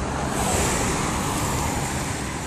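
Road noise from tyres on asphalt: a steady hiss that swells about half a second in and holds, with a low rumble underneath.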